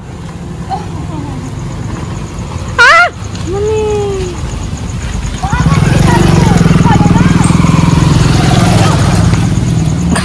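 A motor vehicle engine running nearby with a steady low rumble that grows louder about halfway through. A short, loud, high-pitched call cuts in about three seconds in.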